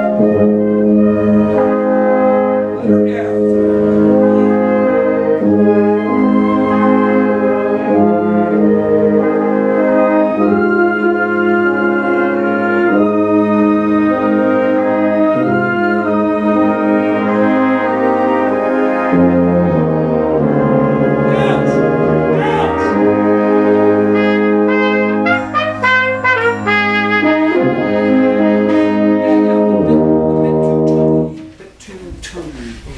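A school wind ensemble playing together, brass to the fore: full sustained chords with moving melodic lines over them, at a steady loud level.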